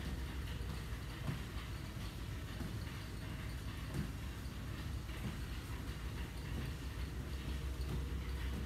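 Steady low drone of a ship's machinery heard inside a cabin-like room, with a few faint, irregular light knocks over it.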